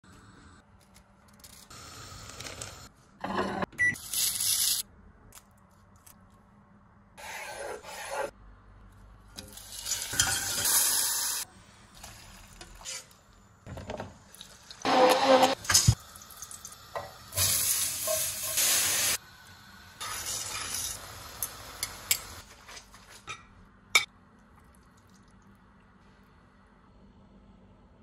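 A string of short cooking sounds cut one after another: pans and utensils clattering, sizzling and stirring, each lasting a second or two with quiet in between.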